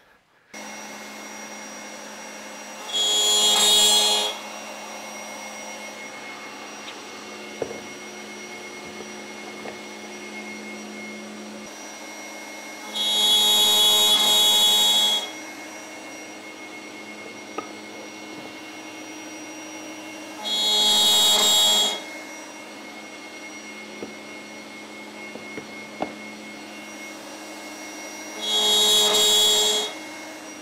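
Table-mounted router with a 6 mm straight bit cutting spline slots through the mitred corners of a wooden box: four louder cuts of one to two seconds each, over a steady motor hum between them.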